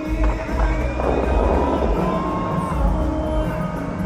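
Music of the Dubai Fountain show, a song played loud over the outdoor sound system. About a second in, a rushing whoosh of the water jets rises over it for about a second.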